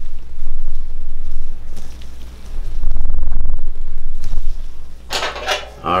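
Low rumbling handling noise from a camera being moved and repositioned, in two spells: one just after the start and a longer one around the middle.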